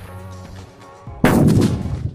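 A sutli bomb (a jute-twine-wrapped firecracker) strapped to a small LPG cylinder goes off with one loud bang about a second in, dying away over most of a second. The bang is the firecracker alone: the cylinder does not burst and is left intact, only dented.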